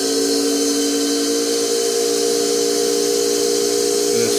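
Surface grinder's electric motor and grinding wheel running at reduced speed on a variable speed controller, a steady whine of several tones over a hiss. The wheel is being brought up slowly from zero instead of starting at full speed, so that any wobble or defect shows before it reaches 3600 RPM.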